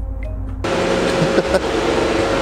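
A car idling on a chassis dyno: a steady mechanical hum with a faint constant whine. It cuts in suddenly about half a second in, after a brief quieter hum.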